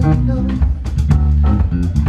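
Live funk band playing an instrumental passage: electric guitar and bass guitar over a drum kit, with a heavy bass line and regular drum hits.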